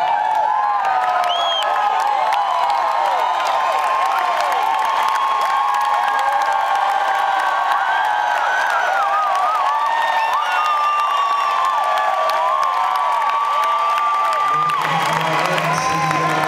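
Large arena crowd cheering and whooping, many voices rising and falling, with little music under it; a low musical accompaniment comes back in near the end.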